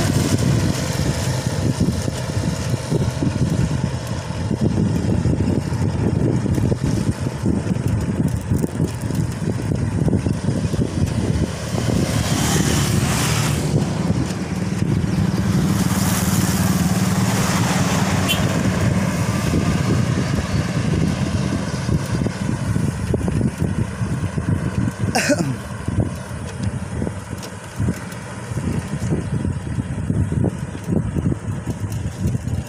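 Continuous rumble of wind on the microphone and road noise while riding a bicycle, with traffic going by: a motorcycle alongside at the start and a car engine passing about 15 seconds in. A single sharp click comes about five seconds before the end.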